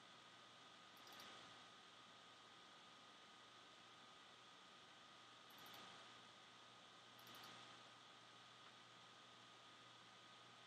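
Near silence: faint room hiss, with three faint computer-mouse clicks about one, five and a half and seven seconds in.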